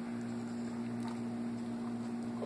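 A steady low hum, with a faint click about a second in.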